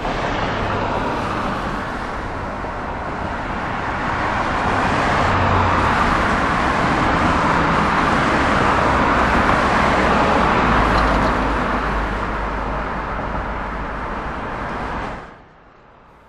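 Road traffic noise of a car and a heavy truck driving past. It swells to its loudest through the middle, with a deep rumble near the peak, then fades and cuts off just before the end.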